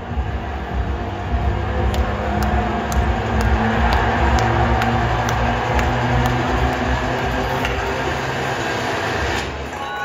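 Ballpark PA sound for the video-board intro: a loud, train-like rumble with low held tones and a few sharp clicks, dropping off near the end.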